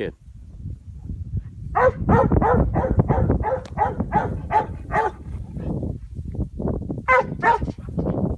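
A Hangin Tree Cowdog barking at yearling cattle it is gathering: a quick run of about ten sharp barks, roughly three a second, then three more near the end, over a steady low rumble.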